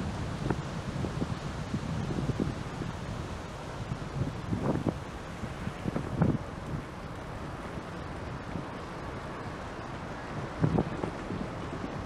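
Wind buffeting an action camera's microphone while riding a bicycle, a steady low rumble with a few brief louder thumps or gusts about five, six and eleven seconds in.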